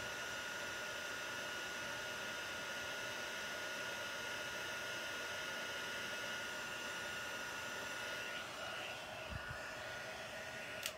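Embossing heat tool running steadily, a constant fan rush with a thin high whine, as it melts embossing powder on a stamped sentiment.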